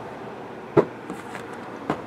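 A marker, nearly out of ink, writing on a shrink-wrapped cardboard box: two short squeaky strokes about a second apart.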